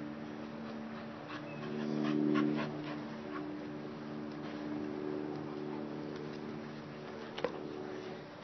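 Excited bully-breed dogs whimpering and panting as they crowd and jump up, with a few short sharp sounds about two to three seconds in and one near the end, over a steady low hum.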